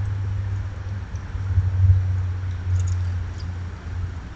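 Low rumbling and bumping on the microphone, swelling in the middle, with a few faint high ticks about three seconds in.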